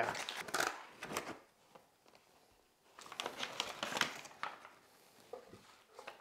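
Aluminum foil and butcher paper wraps crinkling and rustling as they are pulled open from around cooked racks of ribs. The sound comes in two bouts of a second or so, near the start and around the middle, with a quiet gap between.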